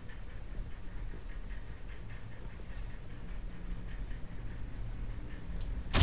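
Quiet low hum with a few faint ticks while a Gaboon viper sizes up a feeder rat; right at the end a sudden sound as the viper strikes the rat.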